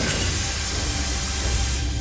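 Steam hissing out steadily from a steam engine's cracked cylinder, fading out near the end, over a low rumble.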